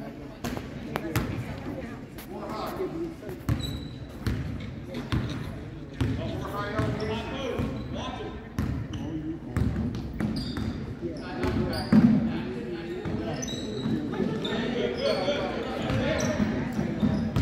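Basketball game in a gymnasium: the ball bouncing on the hardwood court and spectators talking, with short high squeaks. The loudest moment is a sharp thump about twelve seconds in.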